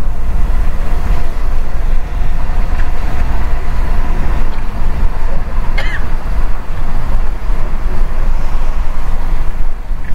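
Car driving on a wet highway in rain, heard from inside the cabin: a steady low rumble of engine and road with a hiss of tyres on water.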